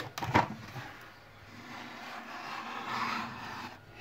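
Plastic incubator lid being handled and lifted open: a few sharp clicks at the start, then a soft rubbing, scraping sound that grows a little louder toward the end.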